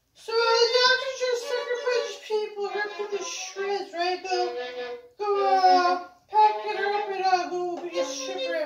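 Violin bowed in a slow melody of held, slightly wavering notes, broken by two short pauses about five and six seconds in.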